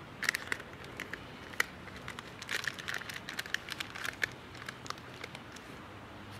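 Hands planting in dry garden soil and handling a thin black plastic seedling pack: irregular small crackles, clicks and rustles, busiest in the middle.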